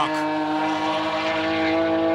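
Race car engine, the Nissan VQ35 V6 of the C-West Z33 Super Taikyu car, droning at a steady pitch as it runs on track.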